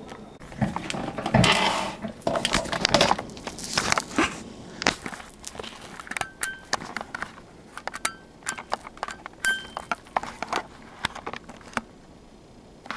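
Handling noise from a handheld camera being picked up and moved: irregular rustling, knocks and clicks, busiest in the first few seconds and thinning to scattered clicks after.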